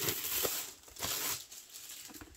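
Clear plastic wrap around a rolled diamond painting canvas crinkling under a hand, in two brief rustles, one at the start and one about a second in.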